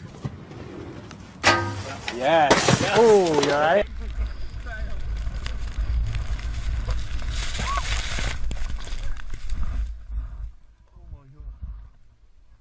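A person's voice crying out loudly for about two seconds, its pitch wavering up and down. Then several seconds of steady low rumbling noise, which fades away near the end.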